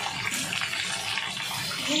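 Hot oil sizzling in a kadhai on a gas stove, a steady hiss.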